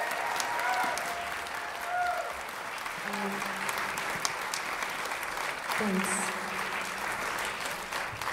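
Audience applauding, with a couple of low held tones sounding over the clapping about three seconds in and again from about six seconds on.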